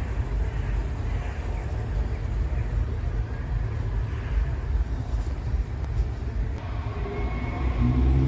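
Steady low rumble of city traffic as outdoor background.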